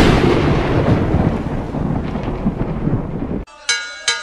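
A loud thunderclap sound effect that breaks in suddenly and rolls on as a long rumble before cutting off. Near the end a bell is struck twice.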